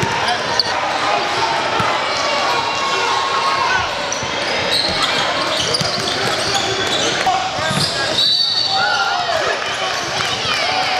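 Live indoor basketball game sound: a basketball bouncing on a hardwood court, short high sneaker squeaks, and the voices of players and spectators, all echoing in a large gym.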